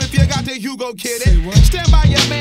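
Hip hop track: a heavy bass-and-kick drum beat under a vocal line. The bass and kick drop out for under a second about half a second in, then the beat comes back.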